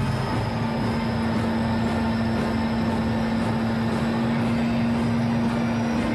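Tank on parade running, a steady rumble with a constant low hum.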